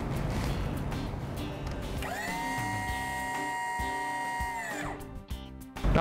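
The battery-powered electric motor of the hydraulic lift pump whines up to speed about two seconds in, runs steadily, and winds down just before the end as the lift reaches full extension, under background music.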